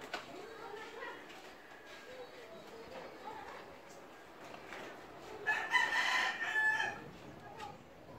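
A rooster crowing once, a single long call of about a second and a half a little past halfway through.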